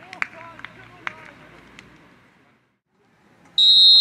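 Referee's whistle blown in one long, loud, steady blast starting about three and a half seconds in, signalling the kickoff. Before it, faint voices and a few sharp clicks.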